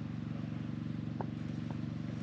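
Small gasoline engine of a drywashing machine running steadily, a low, even chug with a fast pulse. Two faint ticks come about halfway through.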